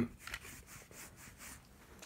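Faint handling noise: a hand and pocket knives brushing and rubbing on a cloth in a series of soft scuffs as one knife is put down and another picked up.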